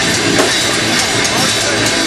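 Metalcore band playing live at full volume: distorted guitars, bass and a pounding drum kit in a dense, loud mix, with the vocalist's shouted vocals on top, heard from within the audience.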